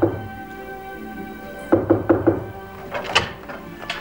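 Knocking on a hotel-room door: a quick run of about four raps about two seconds in, then a sharp click about three seconds in. Soft sustained music plays underneath.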